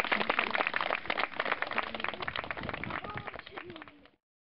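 Audience applause with a few voices mixed in, fading away and cutting off at the end.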